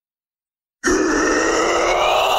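Isolated metal vocal track: a male singer's harsh, sustained screamed note cuts in abruptly from silence about a second in and is held loud, its pitch sagging slightly.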